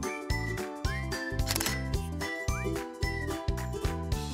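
Upbeat background music with a steady beat and bright chiming, bell-like notes, punctuated by short rising slide notes.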